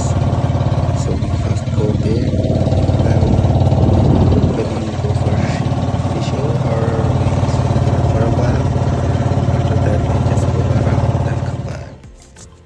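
Engine of a small outrigger motor boat (pump boat) running steadily under way: a loud, even drone with a low hum.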